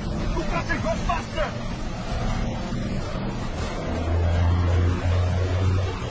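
Truck engine running in a film soundtrack, a steady low drone that grows stronger about four seconds in.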